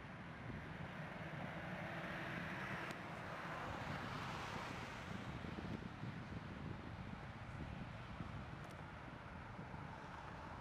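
Jet engines of a Boeing 787-9 Dreamliner, heard as a rushing noise that swells over the first few seconds and then slowly eases as the airliner moves past.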